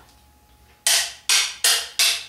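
A machete blade striking a concrete cross three times in quick succession, starting about a second in. Each strike is a sharp hit with a short ring.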